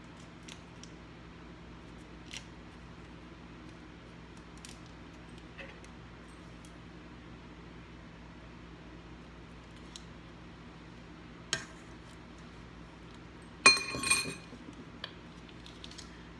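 Faint handling clicks over a steady low hum while a butter portion is unwrapped and scooped. Near the end, one sharp metallic clink with a brief ringing, the sound of a metal utensil striking the stainless steel saucepan.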